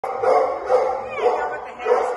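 Gray-and-white pit bull–type dog barking, about four short barks in quick succession.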